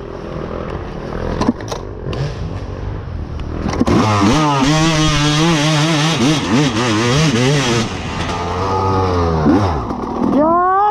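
Off-road motorcycle engine running at low revs with a few sharp knocks, then about four seconds in revving hard, its pitch rising and falling as the throttle works. It eases off, picks up again and drops away near the end.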